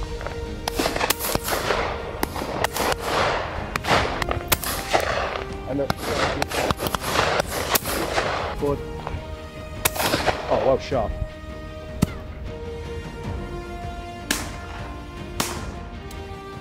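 A dozen or more shotgun shots fired at flying game birds, often in quick pairs, each sharp crack trailing off, with background music running underneath.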